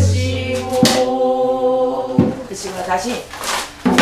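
A woman singing a southern Korean folk song (namdo minyo) in long, wavering held notes, accompanied by buk barrel-drum strokes: a deep boom at the start, then sharp knocks about one second in, about two seconds in and just before the end.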